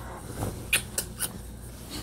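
A baby's faint small vocal sound about half a second in, followed by a few sharp clicks over the next second.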